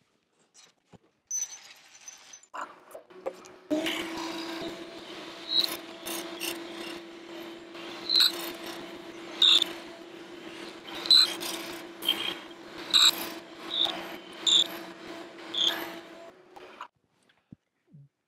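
Milling machine spindle running an end mill through purpleheart hardwood, with the table fed by hand: a steady hum under the cutter's hiss and irregular sharp bites as it chews out a pocket. It starts a few seconds in and stops shortly before the end.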